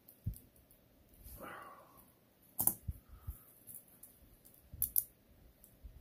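Stainless steel watch bracelet and its clasp clicking as they are handled and fastened: scattered sharp metallic clicks, the loudest about two and a half seconds in, with a soft rustle shortly before.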